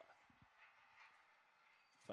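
Near silence: faint background hiss with a couple of faint low thumps about half a second in.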